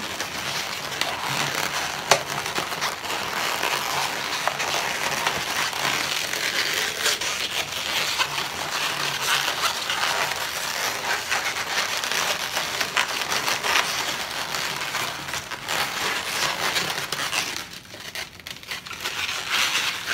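Latex modelling balloons (160s) rubbing against one another as they are twisted, pinch-twisted and wrapped around the sculpture: a continuous rustling with many small clicks, easing off briefly near the end.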